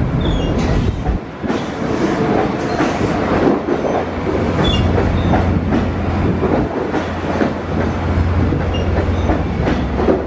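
LIRR C3 bilevel coaches of a diesel push-pull train rolling past, with wheels clicking over rail joints and a few brief high squeaks. A low steady drone swells from about four seconds in.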